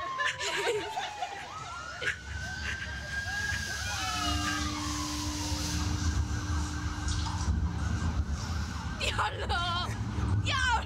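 Siren-like wailing tone from the slingshot ride's warning sound: it slides down, rises again about two seconds in, holds, then falls again and gives way to a steady warbling tone. A low rumble grows under it as the capsule tilts back before launch.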